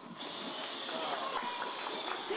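A ball-shooting competition robot's electric motors running with a steady high whir, with faint voices in the background.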